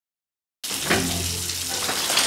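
Shower spray running onto a person in a bathtub. It starts suddenly after about half a second of silence and then runs steadily.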